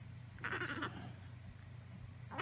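A newborn baby making a brief, faint squeaky grunt in his sleep, about half a second in, over a low steady room hum.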